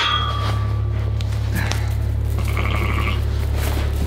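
A struck metal pen gate rings and fades over the first second, over a steady low hum. Light knocks follow as sheep move in the straw, with a faint sheep bleat a little before three seconds in.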